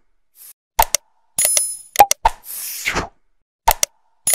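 Animated like-and-subscribe sound effects: a few sharp mouse-like clicks, a bright bell ding, a pop and a falling whoosh. The pattern repeats roughly every three seconds, with the ding about one and a half seconds in and the whoosh near the end.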